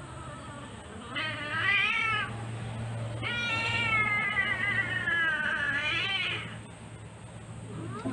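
Siamese cat yowling twice while held for a claw trim: a short cry that rises and falls about a second in, then a long drawn-out cry of about three seconds that falls in pitch and lifts again at its end.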